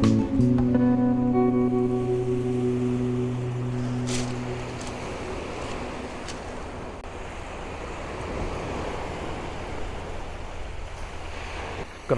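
Acoustic guitar background music with held notes fading out over the first few seconds, leaving the steady wash of small waves breaking on a shingle beach.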